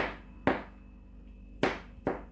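Kitchen knife chopping garlic on a plastic cutting board: a few single, sharp knocks of the blade against the board, spaced unevenly with short pauses between.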